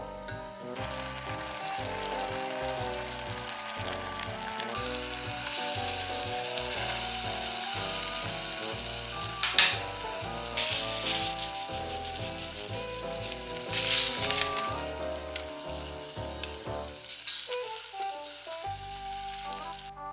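Sweet potato chunks sizzling in a stainless steel saucepan as the butter and sugar-soy sauce cook down to a glaze, with a few short, louder spells as they are stirred. The sizzle starts about a second in and stops near the end, over background music.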